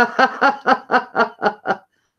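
A woman laughing: a run of about eight short 'ha' pulses, roughly four a second, growing weaker and stopping near the end.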